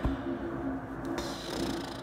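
A steady low hum with a rumble beneath it, with a faint hiss coming up about halfway through. There is a short click at the very start.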